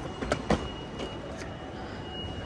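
A hard-shell suitcase set down onto an airport check-in baggage scale: two knocks a fraction of a second apart within the first second. A thin steady high tone sounds in the background.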